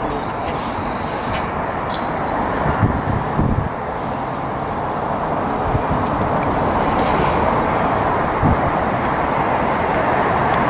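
Steady drone of a Class 70 diesel locomotive standing at the derailment site with its engine running. A faint high hiss comes twice, once in the first second and again about seven seconds in.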